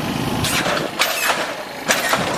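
Lowrider car running while three-wheeling on its hydraulic suspension, with three short, sharp bursts of noise.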